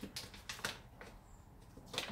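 A few faint, short rustles and taps in the first second as a paper flour bag is handled at its open top.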